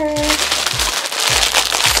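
Clear plastic packaging bag crinkling loudly as it is handled, over background music with a steady beat.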